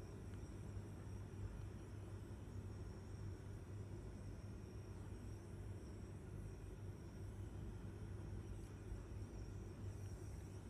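Faint steady low hum with no distinct events, unchanged throughout.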